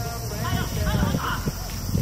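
Soccer players calling out and shouting to each other across the pitch during play, several short calls from different voices, over low thuds and field ambience.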